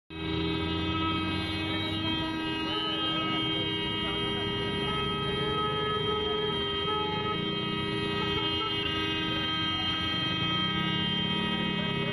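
A vehicle horn held on continuously, a steady chord of several tones that does not change in pitch, with people's voices faintly underneath.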